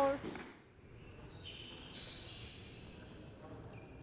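The end of the umpire's spoken score call, then quiet hall ambience with a few faint, thin high-pitched tones.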